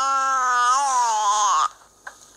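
A small child's voice in one long, drawn-out vocal sound whose pitch wavers up and down, breaking off about one and a half seconds in.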